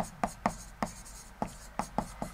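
A pen stylus writing on an interactive touchscreen board: a string of short, irregular taps and clicks as letters are stroked onto the screen.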